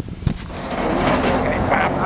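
A truck approaching on the highway, its engine and road noise building from about half a second in, with brief voices over it near the end.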